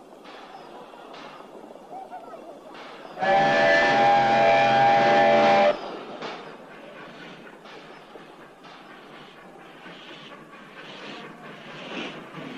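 A train whistle sounds one long blast of several tones at once, starting about three seconds in and lasting about two and a half seconds: the departure signal. Around it runs a low, noisy station bustle with faint knocks.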